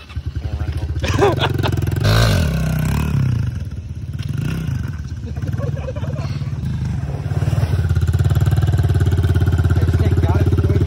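Small pit bike engine running with a fast, even putter, louder for a moment about two seconds in as the bike pulls away, then holding a steady note as it rides across the grass and back.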